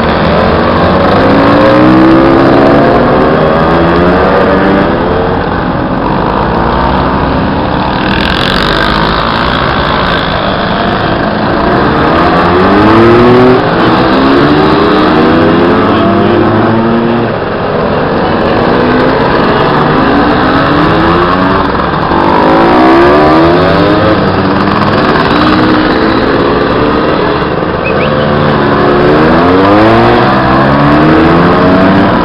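Vintage two-stroke scooters, Lambrettas and Vespas, pulling away one after another, several engines running at once with their pitch rising repeatedly as each accelerates past.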